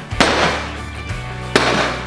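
A bat whacking a homemade paper-mache piñata: two sharp hits, one just after the start and another about a second and a half in. Background music with a steady bass line plays underneath.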